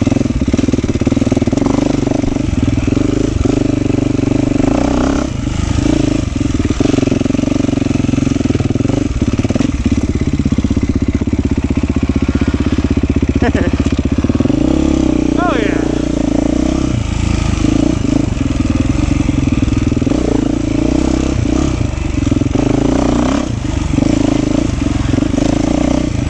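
Beta 390 Race Edition four-stroke single-cylinder dirt bike engine running under way on a trail at a fairly steady, low engine speed, pulling harder for a few seconds near the middle. Two brief high squeaks come near the middle.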